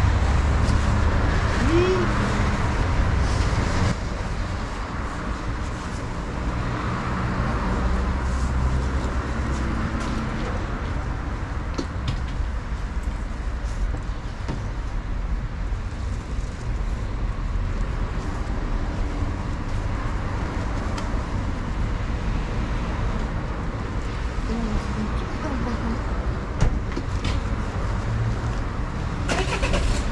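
Motor vehicle engine idling with a steady low hum, a little louder in the first few seconds.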